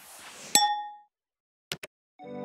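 Intro sound effects: a short noisy swoosh that ends in a single bright ding, ringing out for about half a second, then two quick clicks near the end.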